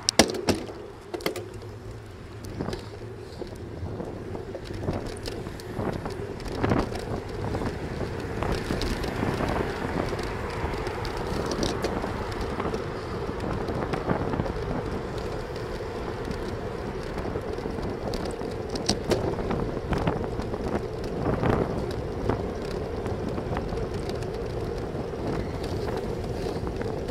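Wind rushing over a bicycle-mounted camera's microphone with tyre and road noise as the bike rides along, building over the first several seconds as it picks up speed. A few sharp knocks and rattles come at the start.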